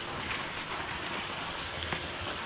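Steady wash of ocean surf, an even hiss with no distinct events.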